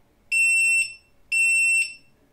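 Xhorse VVDI Multi-Prog programmer's buzzer beeping twice, two steady high-pitched half-second beeps about a second apart. The beeps signal that the read has stopped with a length of zero and the chip power has been switched off.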